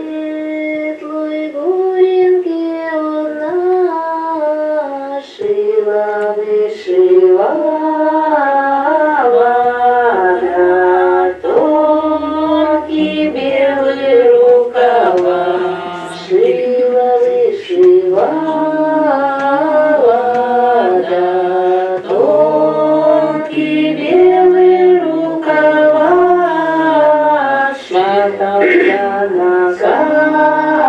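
Archival field recording of village women singing a Russian folk song unaccompanied, in long held phrases with voices moving together in harmony, played back to a listening audience.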